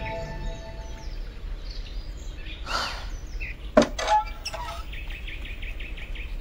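Soft background music fades out about a second in, leaving outdoor ambience with birds chirping: a couple of sharp knocks just before the middle, then a quick run of high chirps near the end.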